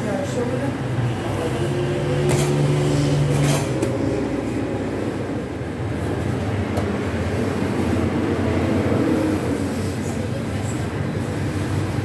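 Gas-fired bread oven's burner and blower running with a steady rumbling hum, with two sharp knocks a little over two and three and a half seconds in and faint voices underneath.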